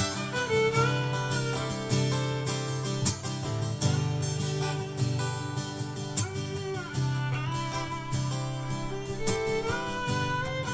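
Instrumental band music: a fiddle plays a gliding melody over strummed guitar, with strong chords landing about once a second.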